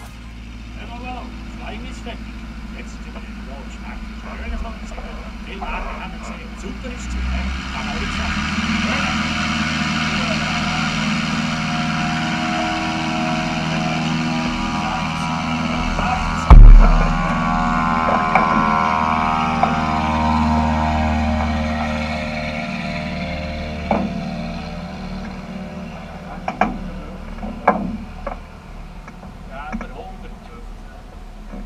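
A light propeller aircraft's engine passing by, building over several seconds, holding, then fading away with its pitch sinking slightly as it goes. There is a single sharp knock close to the microphone about halfway through.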